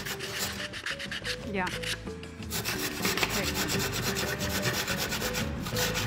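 Fine-toothed handsaw cutting through a small piece of wood with quick, even back-and-forth strokes.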